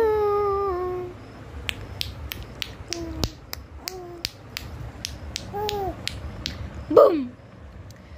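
A baby's drawn-out coo fades out about a second in. Then comes a run of sharp clicks, about four a second, with the baby's short coos between them and a louder, falling baby squeal near the end.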